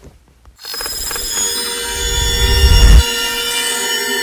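Logo-animation sting: a bright, ringing swell of many held tones that begins about half a second in and grows louder with deepening bass, then drops back suddenly about three seconds in.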